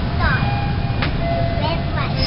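Toronto subway car running, heard from inside the car: a steady low rumble with thin squealing tones over it, a few short rising whines near the start and near the end, and a click about a second in.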